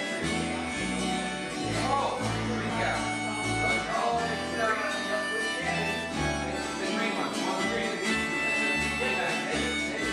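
Instrumental break of an acoustic folk song played live: strummed acoustic guitar over an acoustic bass guitar walking through its notes, with harmonica holding a few long notes over the top.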